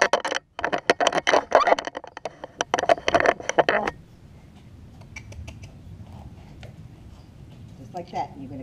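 Handling noise from a small camera being moved and set in place: a rapid run of clicks, knocks and rubbing for about four seconds. Then it drops to a faint low background with a few soft ticks.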